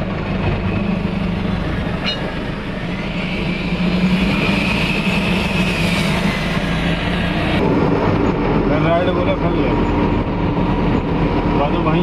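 Truck's diesel engine running steadily at low speed, heard from inside the cab as a constant low drone.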